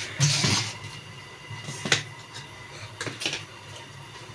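Ground masala paste dropped into hot oil in a large metal cooking pot and sizzling, with a louder rush as it goes in near the start. A few sharp clicks sound over the sizzle.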